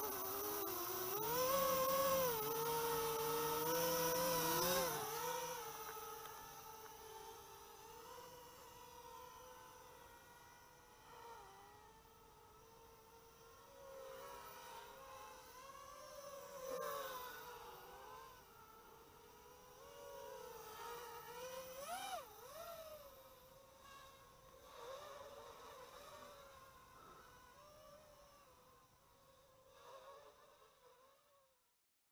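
Quadcopter's 2400kv brushless motors and propellers whining, loud as it is hand-launched and then fainter as it flies away. The pitch rises and falls with the throttle.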